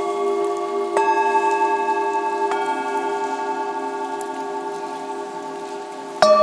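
Antique Himalayan singing bowls struck and left ringing, their overlapping tones sustaining and slowly fading. Fresh strikes come about a second in and again about two and a half seconds in, each adding new ringing tones over the decaying ones.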